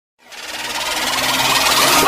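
Synthesized intro sound effect: a rapid buzzing noise that starts a moment in and swells steadily louder.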